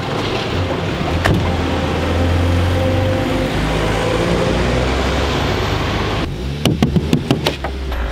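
A motor vehicle engine running close by, a steady low rumble with a noisy wash over it, which stops abruptly about six seconds in. It is followed by a quick run of sharp clicks and knocks.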